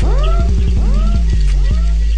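Oldskool jungle track: deep sub-bass under a chopped breakbeat, with a short upward-swooping sound repeating four times, about every half second.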